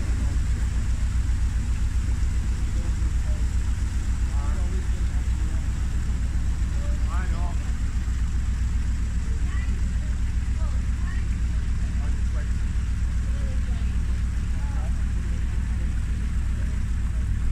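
A narrowboat's diesel engine idles with a steady, fast low chugging, while water gushes through the lock's upper gate paddles as the chamber fills.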